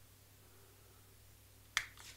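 Near-quiet room tone, broken near the end by a single sharp click as the stainless steel paintball bolt is set down on the table.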